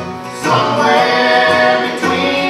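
Bluegrass band playing live: harmony singing over acoustic guitar, mandolin, upright bass and banjo, growing louder about half a second in.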